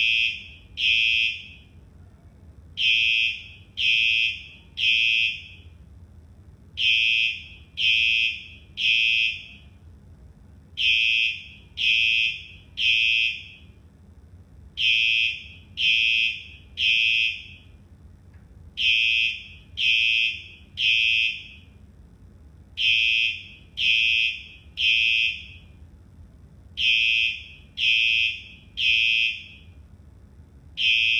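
A school fire alarm sounding the temporal-three evacuation signal: three high-pitched half-second beeps a second apart, then a short pause, repeating about every four seconds throughout.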